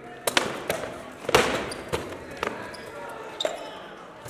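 Rattan swords striking wooden round shields and armour in heavy sparring: a string of about seven sharp cracks at uneven intervals, the loudest about a third of the way in, each with a short echo.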